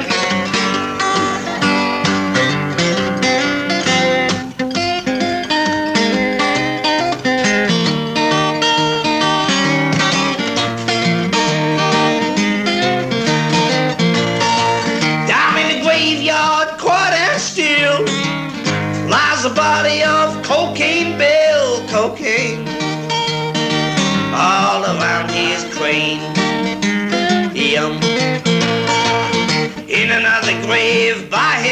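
Acoustic guitar playing a folk song, a run of picked notes. From about halfway a voice sings over it with a wavering pitch.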